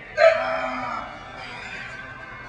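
A loud, drawn-out grunt of effort, starting suddenly about a quarter second in and fading within a second, as a very heavy barbell back squat is driven up out of the bottom.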